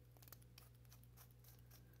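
Near silence: room tone with a steady low hum and a few faint ticks from small plastic and metal parts being handled.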